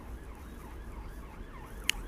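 Faint distant siren wailing over a steady low outdoor rumble, with a brief click near the end.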